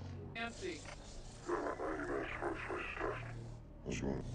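A person's voice in short vocal sounds over a low steady hum, with a brief drop-out near the end.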